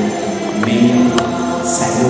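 Church choir singing a slow hymn in long held notes.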